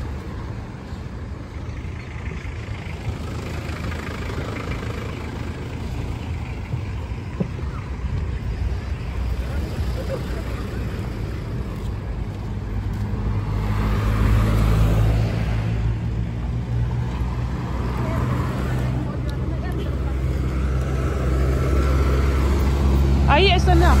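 Road traffic passing close by: cars and trucks driving past with a steady low engine rumble that swells about two-thirds of the way in, and again near the end as a truck comes alongside.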